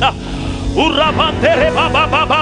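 A man's voice praying in tongues through a microphone and PA: fast, evenly repeated chant-like syllables that resume after a pause of under a second, over a steady low hum.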